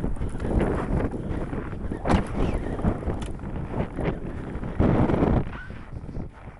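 Wind buffeting a handheld camcorder's microphone, a steady low rumble, with a few knocks and bumps from the camera being carried and handled.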